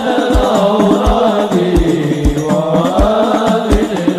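Arabic sholawat (devotional song in praise of the Prophet) sung by a male voice in long, melismatic lines over a low drum beat about twice a second.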